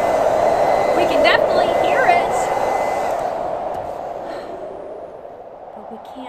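Handheld electric hair dryer blowing steadily, a rush of air with a thin high motor whine. The whine stops about three seconds in and the rush dies away over the next two seconds as the dryer is switched off.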